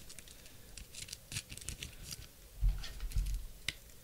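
Faint handling sounds of trading cards and a hard plastic card holder: scattered small clicks, scrapes and rustles, with a soft low thump a little under three seconds in.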